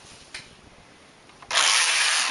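A knitting machine carriage being pushed across the needle bed, knitting one row. The loud rushing slide starts about one and a half seconds in, after a quiet stretch with a faint click.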